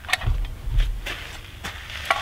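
Handling noise: a few light clicks as a rifle and cartridge are handled, with a low rumble in the first second.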